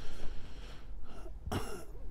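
A person clearing their throat once, a short burst about one and a half seconds in, over faint room noise.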